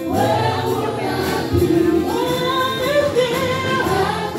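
A small vocal group singing a gospel hymn in harmony through microphones, with long held notes, accompanied by an electronic keyboard.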